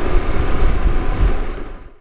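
Wind rushing over the microphone and road noise from a moving motorbike, a dense low rumble that fades out near the end.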